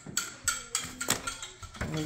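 Several light clicks and taps of handling: a clear plastic ruler and small items knocking about in a paper gift bag on a glass table.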